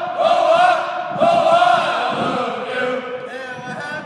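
Several voices singing together in long, held notes that change pitch every half second or so.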